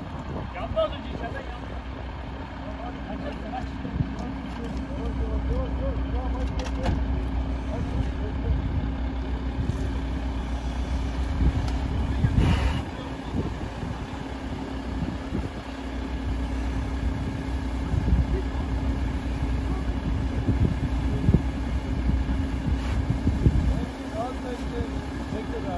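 A fire engine running with a steady hum while firefighters hose water onto a burning car, with people's voices in the background. A short burst of hiss comes about halfway through.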